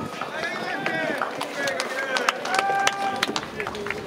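Voices calling out in long, drawn-out tones, mixed with many sharp clicks.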